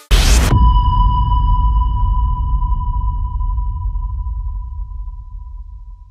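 A single cinematic impact hit for a logo reveal: one loud boom with a low rumble and a high, steady ringing tone. Both fade slowly over about six seconds.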